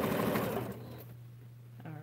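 Domestic electric sewing machine stitching a seam through layered cotton quilt pieces, running fast and then stopping about a second in.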